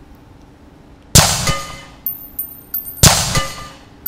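Two single rifle shots about two seconds apart, each a sharp, loud report with a decaying ring. Between them come high metallic pings of spent brass casings landing.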